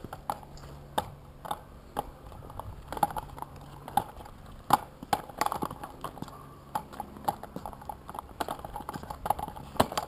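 Hard clacking strides on brick paving, irregular, about one to two knocks a second, as inline skates are pushed and set down over the pavers.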